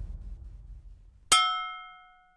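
The tail of an electronic dance beat dying away, then a single bright, bell-like metallic ding about a second in that rings briefly and is cut off.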